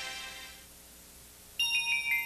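Closing music dies away into a quiet gap, then a production-company logo jingle starts suddenly near the end with several high, bell-like tones stepping between pitches.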